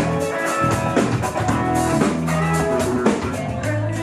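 A band playing rock music, with guitar over a steady drum-kit beat and no vocals.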